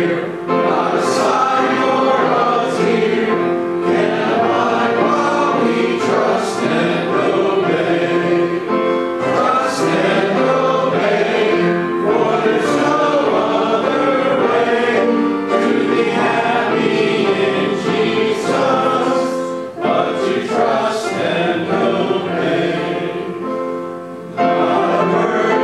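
Church congregation singing a hymn together with piano accompaniment, the voices holding long sustained notes.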